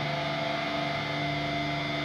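Live rock band holding a sustained closing chord at the end of a song: steady ringing electric-guitar tones over a wash of cymbals and drums.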